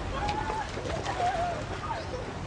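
Outdoor ambience with a bird giving two short wavering calls, one near the start and one about a second and a half in.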